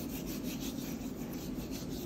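A hand rubbing salt and seasoning into the scored skin of a raw tilapia on a wet wooden cutting board, in quick, repeated, scratchy strokes.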